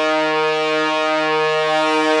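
Melody loop from a trap sample pack playing a sustained, held horn chord, its notes shifting slightly partway through.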